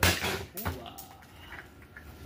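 A Keokuk geode cracking open with one sharp snap in the jaws of a chain pipe cutter as its handles are squeezed, followed by a fainter click of the chain and rock.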